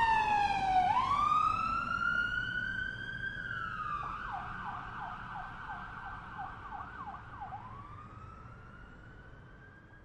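Police siren: a slow wail sinks, then rises again. About four seconds in it switches to a fast yelp of roughly three sweeps a second, then goes back to a rising wail, fading steadily throughout.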